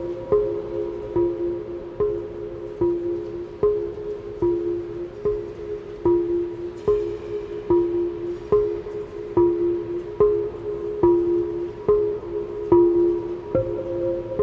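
Large glazed Korean earthenware jars (hangari) struck with felt-headed mallets in a steady rhythm of about five strokes every four seconds. Each stroke leaves a low, ringing hum, and the strokes alternate between two pitches. The ringing is drawn out by the reverberation of the steel-walled dome, with no effects added.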